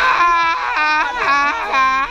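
Loud, drawn-out, high-pitched wordless yelling from a person's voice: several long cries that shift in pitch, ending in one held steady note.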